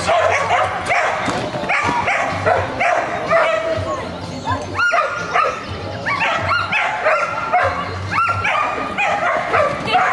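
Dog barking over and over while running an agility course, with the handler's short shouted commands mixed in between the barks.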